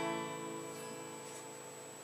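A strummed chord on a cheap First Act acoustic guitar ringing on and slowly fading away.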